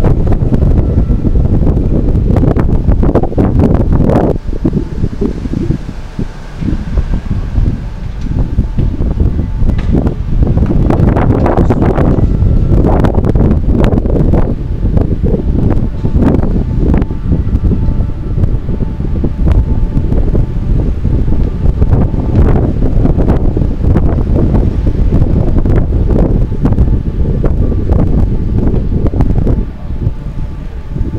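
Wind buffeting the microphone of a camera on a moving bicycle: a loud, rough rumble that eases briefly about five seconds in, with city street traffic underneath.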